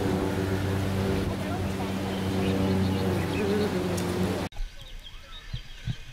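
A steady low mechanical hum with scattered voices over it, cut off suddenly about four and a half seconds in. After the cut, quieter open-air sound with faint voices and low wind bumps on the microphone.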